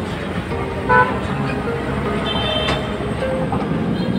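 Road traffic noise with a short vehicle horn toot about a second in, under background music.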